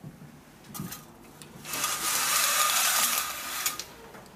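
Venetian blinds being pulled up by their cord: a couple of light clicks, then about two seconds of fast rattling as the slats stack up.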